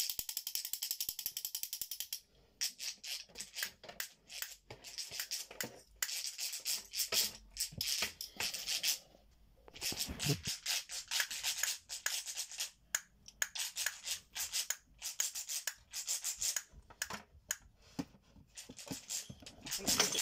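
Toy handle castanets shaken, clacking in rapid runs of clicks with a couple of short pauses.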